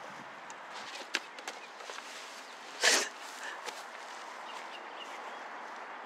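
Quiet outdoor background hiss with a few light clicks about a second in and one short rustling burst about three seconds in.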